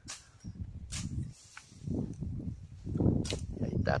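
Machete chopping through ferns and brush: a handful of sharp, irregular strikes about a second apart.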